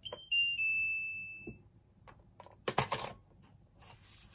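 Jingchen portable label printer sounding a short electronic chime as its button is pressed: three quick notes stepping down, the last held and fading out. About two and a half seconds in come a few plastic clicks and taps from handling the printer.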